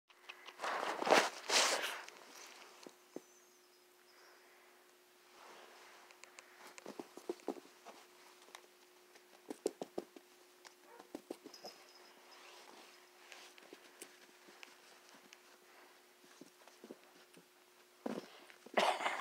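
Catahoula leopard dog puppy barking a few times in quick succession near the start, followed by scattered light taps and knocks as it moves about.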